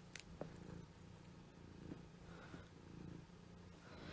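Near silence: faint room tone with a steady low hum and a faint click shortly after the start.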